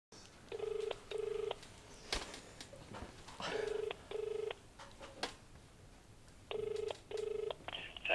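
Telephone ringback tone heard on the caller's end of the line, in the double-ring pattern: three pairs of short rings about three seconds apart, with a few faint clicks on the line between them.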